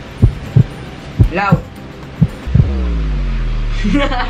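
Heartbeat-style thumping sound effect, then about two and a half seconds in a loud, deep humming tone whose overtones slide downward. A short voice call comes about a second and a half in.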